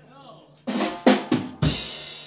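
Rock drum kit played in a short fill: a few quick drum strikes, then a heavy hit on bass drum and crash cymbal near the end, the cymbal ringing on.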